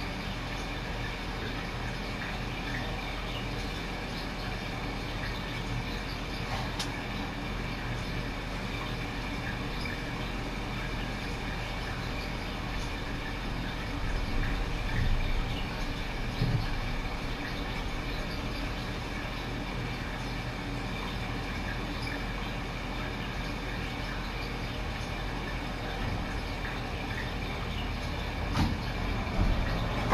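Steady low hum and hiss of room noise, with a few soft bumps about halfway through and again near the end.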